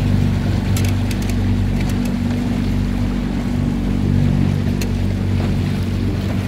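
Boat engine running steadily with a constant low hum, water washing against the hull, and a few light clicks about a second in.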